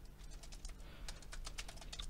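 Computer keyboard being typed on: a quiet run of key clicks, several a second.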